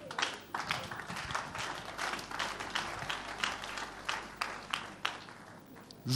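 Church congregation clapping: a dense scatter of hand claps that thins out and dies away near the end.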